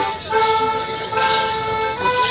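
Folk music playing for a Morris handkerchief dance, holding one long sustained note for most of a second and a half before the tune moves on.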